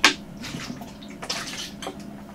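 Drink sloshing and glugging in a large plastic bottle as it is tipped up and drunk from, with swallowing. A sharp click right at the start is the loudest sound.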